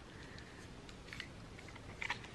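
Quiet room tone with a few faint clicks and taps of plastic hair-styler attachments being handled, the clearest about a second in.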